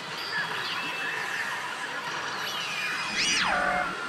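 Saint Seiya pachislot machine playing electronic effect sounds and music, with several sliding tones over the background din of a pachinko hall. Near the end comes the loudest part, a sweep that rises sharply and then falls away.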